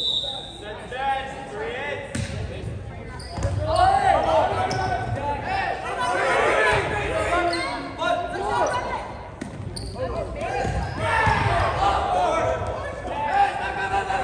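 Volleyball rally in a gym: a short referee's whistle at the start for the serve, then sharp ball contacts and players and bench shouting, echoing in the hall.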